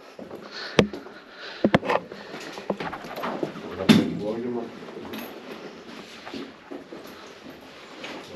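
Sharp clicks and knocks of a wooden door with a metal pull handle being handled and opened, a few separate knocks in the first four seconds over soft handling rustle.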